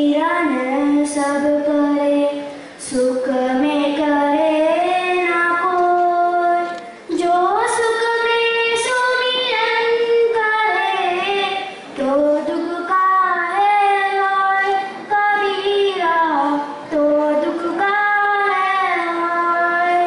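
A child singing solo into a microphone over a sound system, with no instruments. It is a slow melody of long held notes in phrases a few seconds long, with short breaks between phrases.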